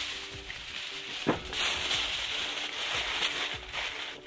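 A sheet of aluminium foil crinkling and rustling as it is handled and crumpled into a wad by hand, with a louder crackle about a second in, over faint background music.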